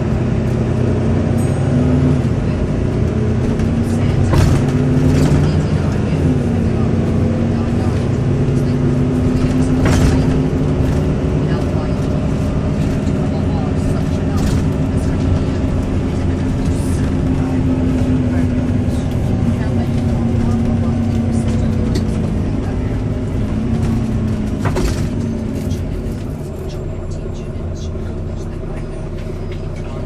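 Volvo B9TL double-decker bus's six-cylinder diesel engine running under way, heard from inside on the upper deck, its note rising and falling as the bus speeds up and eases off. A few sharp knocks from the bus body come through, the loudest about ten seconds in.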